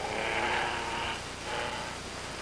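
A racing car's engine running as a rough, noisy sound, easing off after about a second.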